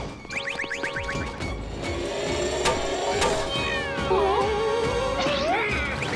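Cartoon sound effects over background music as a gadget hockey stick extends: a quick run of rising electronic chirps near the start, then wobbling, gliding whistle-like tones that sweep sharply upward near the end.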